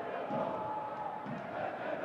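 Football stadium crowd noise: a steady murmur from the stands with faint chanting.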